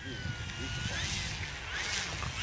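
Radio-controlled model de Havilland Beaver's motor and propeller running at low power as it taxis on grass, a thin whine that dips and then rises in pitch.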